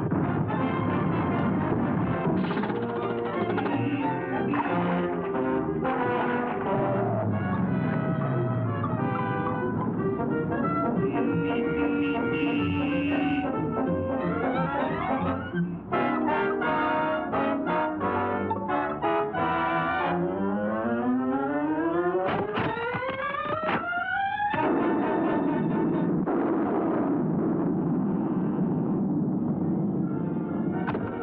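Orchestral cartoon score led by brass. About two-thirds of the way in, a long rising glide climbs and breaks off suddenly, and held brass chords follow.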